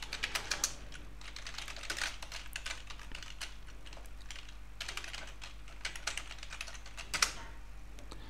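Typing on a computer keyboard: quick runs of keystrokes with short pauses between them, and one louder keystroke near the end.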